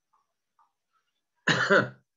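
A man clears his throat once, a short voiced sound about one and a half seconds in, after near silence.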